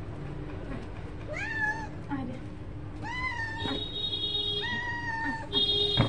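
A cat meowing three times. The first meow rises and falls; the other two are flatter and longer. A high steady tone comes in briefly between and after them and is loudest near the end.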